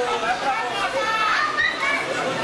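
Many spectators' voices, children's among them, shouting and talking over one another in a steady babble.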